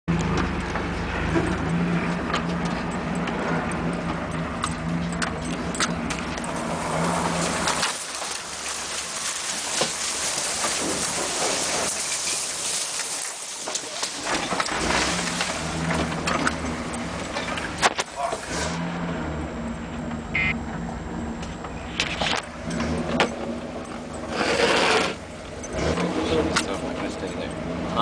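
4x4 pickup truck's engine running as it drives along a rough off-road trail, heard from inside the cab, with road noise and scattered knocks and rattles over bumps. The engine note drops off for several seconds in the middle, then picks up again.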